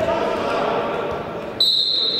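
Referee's whistle blown once, a sudden loud high blast about a second and a half in, ringing on in the hall's echo, signalling that the set-piece kick may be taken.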